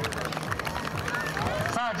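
Outdoor race-course ambience: background music with scattered spectators' voices and claps. A loudspeaker announcement starts just before the end.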